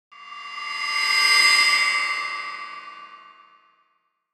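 Title-card sound effect: a metallic ringing tone with many steady overtones. It swells up over about a second and a half, then fades away over the next two seconds.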